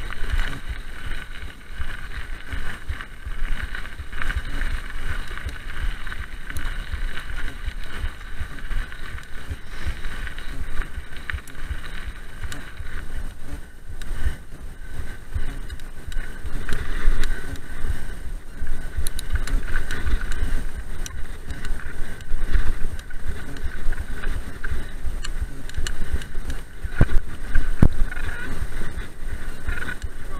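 Mountain bike ridden fast downhill on gravel and dirt trail: tyres rumbling over the ground, wind buffeting the camera microphone, and sharp rattles and knocks from the bike over bumps.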